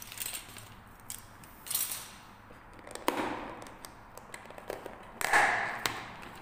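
Thin clear plastic lid of a takeaway food bowl clicking and crackling as it is handled and pried off, in a string of short sharp snaps; the loudest crackle comes near the end as the lid comes free.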